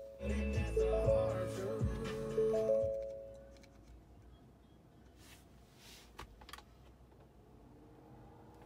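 Ford Bronco start-up welcome tune from the dashboard touchscreen: a short run of held, chime-like notes over a low bass swell, fading out about three seconds in. A quiet cabin follows, with a few faint clicks.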